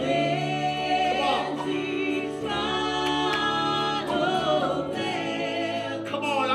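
Church worship team singing a gospel song in long, held notes, with keyboard and bass guitar accompaniment.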